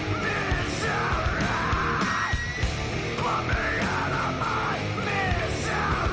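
Live heavy rock band playing: screamed lead vocals in strained phrases over distorted electric guitar and drums.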